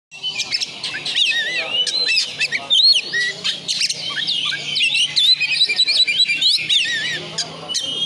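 Oriental magpie-robin (kacer) singing a loud, fast, varied song of chirps and whistled rising and falling notes, running on without a break.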